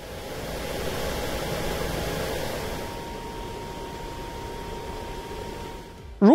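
Third-generation Lao Ma pressure-blowing laptop cooler's fans forcing air into a gaming laptop: a steady rush of air carrying a faint thin whistle, the air whistle this cooler has at 52% fan speed. The rush is a little louder in the first half and eases about halfway through.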